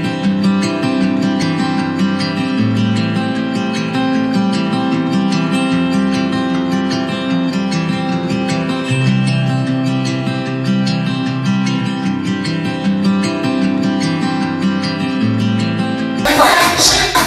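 Background music led by a strummed acoustic guitar, with the bass notes changing every second or two.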